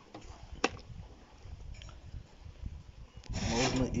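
Bundles of fire-stripped copper wire being handled in a cardboard box: light scraping and rustling, with one sharp click about half a second in. A man starts speaking near the end.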